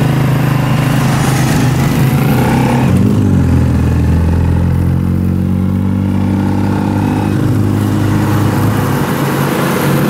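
Motorcycle engine of a tricycle (motorcycle with sidecar) running under way, heard from the passenger seat. About three seconds in its pitch drops, then climbs slowly as the ride goes on.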